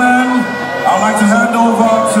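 A man's voice calling out in long, drawn-out notes, with a pause about half a second in, over crowd noise.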